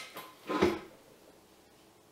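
A sharp click, then a louder knock about half a second later, from a KitchenAid stand mixer's speed control and housing being worked by hand. No motor starts: the mixer has no power because it is not plugged in.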